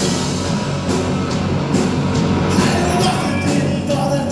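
Live rock band playing loud: electric guitars, bass guitar and a drum kit, with drum and cymbal hits in a steady beat.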